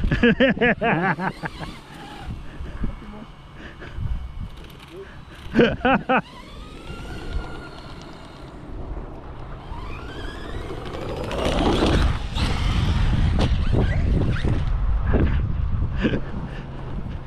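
Large electric RC monster truck's brushless motor whining. The pitch falls and then climbs as the truck slows and speeds up again, and grows loud and dense near the end as it drives hard.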